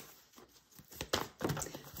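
Tarot cards being handled: almost nothing for about a second, then a few scattered soft card clicks and flicks.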